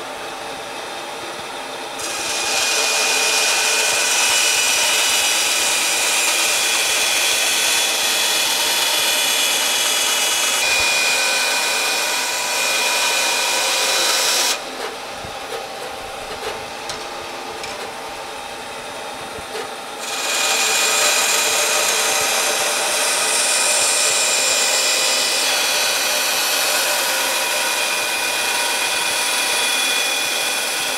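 Band saw running and ripping a thin strip of wood along marked lines to cut out a guitar's tapered end wedge. There are two long cuts, each about twelve seconds, and each is much louder than the saw running free in the pause between them.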